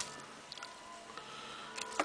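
Quiet, with a few faint clicks and one sharper click near the end, as a small pocket knife trims a radish in the hands.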